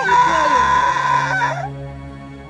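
A long, high call held on one pitch, ending about a second and a half in, over background music.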